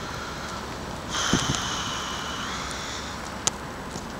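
City street traffic noise: a hiss carrying a high, steady whine rises about a second in and lasts about two seconds, and a single sharp click follows shortly after.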